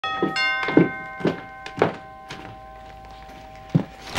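A two-note doorbell chime rings and fades slowly, under footsteps on a hardwood floor at about two steps a second. A sharper thump comes near the end.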